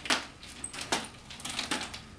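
Nunchaku's short metal chain jangling as the sticks are spun and pulled through rips, with a handful of sharp clinks spread across the two seconds.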